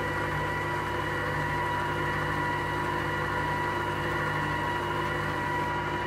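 Stand mixer running steadily at low speed, its wire whisk beating cake batter while oil is added: an even motor hum with a high whine.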